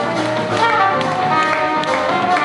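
Live jazz band playing: a trumpet carries a quick melodic line over keyboard and drum kit, with cymbal and drum strokes.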